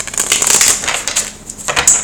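Tarot cards being shuffled by hand: a rapid rustle of many small clicks lasting just over a second, then dying down.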